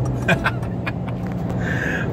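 The Ford Ranger Raptor's 2.0-litre bi-turbo diesel and road noise heard from inside the cabin at highway speed: a steady low engine drone, with the 10-speed automatic held in a gear picked on the paddle shifters.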